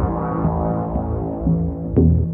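Electronic background music: steady low synth notes held under higher stacked tones, growing louder at the very end.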